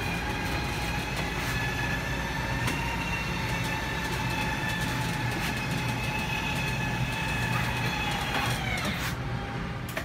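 Electric slide-out motor of a Winnebago Vista 35B RV running as a slide room extends: a steady whine over a low rumble. About eight and a half seconds in the pitch drops and the motor stops, with the slide fully out.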